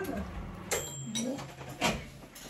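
Quiet eating sounds as a person chews a bite of food, with a single light ringing clink about two-thirds of a second in and another short sharp sound near the end.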